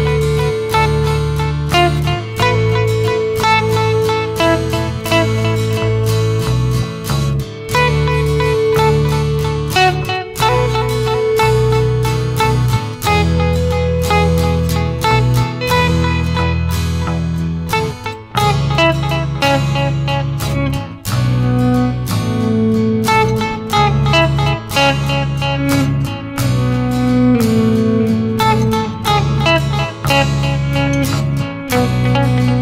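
Semi-hollow electric guitar playing an instrumental line over a backing accompaniment with a sustained bass part that changes every second or two.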